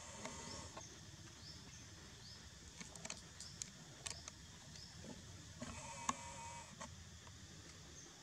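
Faint animal calls: short rising chirps repeating about once a second, and two drawn-out squeaky calls, one at the start and one about six seconds in, with a few sharp clicks in between.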